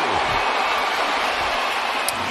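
Baseball stadium crowd cheering, a steady wash of many voices with no single sound standing out.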